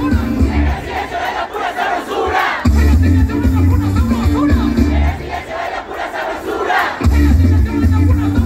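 Loud live band playing a bass-heavy riff that cuts out twice and comes back, under a large crowd shouting and singing along.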